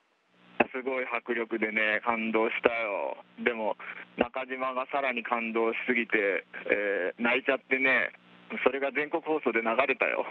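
Speech only: a voice talking over a narrow, telephone-like radio link, with a steady low hum underneath.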